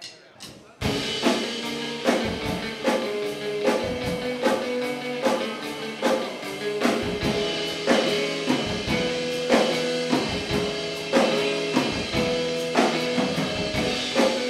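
Acoustic guitar and drum kit starting a song together about a second in, after a few faint taps, then playing on with a steady beat of evenly spaced drum hits under the guitar.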